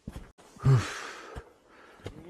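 A man's loud, breathy sigh about half a second in, briefly voiced and then trailing off into a long breath out: the heavy breathing of someone worn out by climbing through deep snow. Two short soft knocks fall around it.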